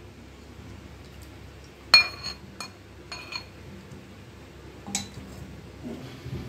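A utensil clinking against a serving bowl as food is served. There is one sharp ringing clink about two seconds in, two lighter clinks soon after, and another near the end.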